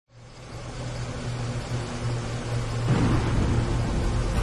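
A car engine's low, steady rumble under falling rain. The sound fades in at the start and grows louder about three seconds in.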